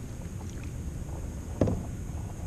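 A largemouth bass being let go by hand at the water's surface beside a kayak, with one short splash about one and a half seconds in, over a steady low rumble of wind on the microphone.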